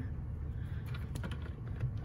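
Faint handling noise: a few light clicks and taps as a square of paper is slid into place on a plastic paper trimmer, over a low steady hum.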